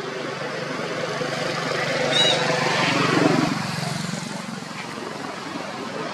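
A motor engine passing by, swelling to its loudest about two to three seconds in and then fading. A short high chirp sounds a little after two seconds in.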